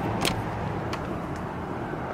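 A key turning in a door's deadbolt and the latch releasing: a couple of sharp clicks over a steady low outdoor rumble as the door opens.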